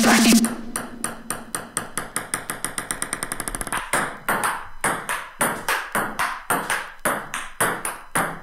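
A music track cuts off, then a ping-pong ball bounces on a table in quicker and quicker ticks. It is followed by the irregular clicks of ball striking paddle and table in a rally.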